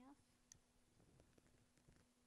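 Near silence: faint room tone with a low steady hum, a brief voice sound right at the start, and a few faint clicks.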